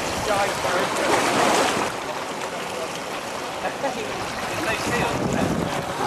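Wind buffeting the microphone over splashing, choppy lake water, a steady rushing noise.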